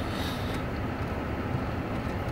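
Steady hum inside a car's cabin from its engine idling while the car stands still.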